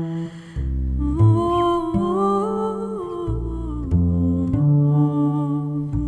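A woman's voice humming a slow, wordless melody with long held notes and gentle pitch glides over plucked double bass notes, after a short breath at the start.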